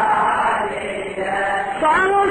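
Group of men chanting together in a Shia lament recitation (latmiya), with the lead reciter's solo voice coming in on a rising note near the end.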